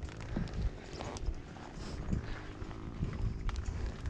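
Dirt bike engine idling with a low, steady rumble, under scattered light clicks and knocks.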